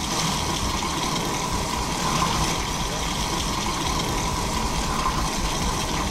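Tap water running steadily into a stainless steel sink and down the drain, while a green abrasive scrubber pad is rubbed on the wet steel to sand out stains and marks (regraining the sink).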